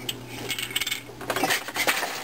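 Wooden jack loom clattering: a run of sharp knocks and clicks from the loom's wooden parts as the shed is changed and the beater is worked between the pattern and tabby shots.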